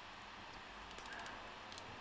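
Quiet room tone with a few faint light ticks, and no hammer blow.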